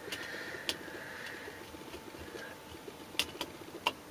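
Light handling sounds as crocodile-clip probe leads are unclipped and swapped over on a small meter: a few sharp clicks and taps, scattered and quiet.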